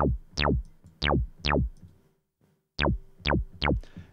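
Revolta 2 FM synthesizer playing a low-pass pluck patch with the filter resonance raised: seven short, low notes, each with a fast downward filter sweep (a "zip down") as the filter envelope closes. The notes come in two groups with a brief silence between them.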